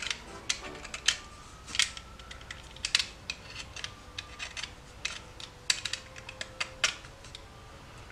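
A Stanley knife blade paring thin slivers off the tip of a green-wood twig to shape a pen nib: a string of small, sharp, irregular clicks and scrapes as each cut is made.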